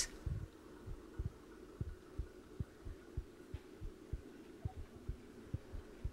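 Faint, dull low thumps, irregular at roughly two to three a second, over a steady low hum.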